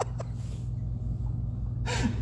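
A man's laughter tailing off in a couple of short bursts right after a shock from a dog training collar on his neck, then a pause over a steady low hum, with a short breath near the end.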